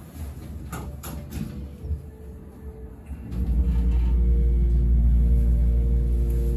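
Hydraulic elevator's pump motor starting with a sudden, loud, steady low hum and drone about three seconds in, as the glass car begins to rise. A few light clicks come before it, about a second in.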